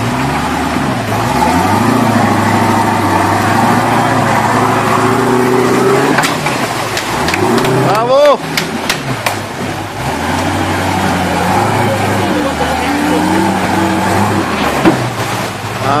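A motor vehicle's engine running, its pitch stepping up and down several times as the revs change. About eight seconds in there is a sharp rising call with a few clicks.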